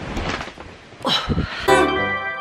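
Brief rustling and handling noise from the camera being moved, with a few soft thuds, then background music starts suddenly near the end.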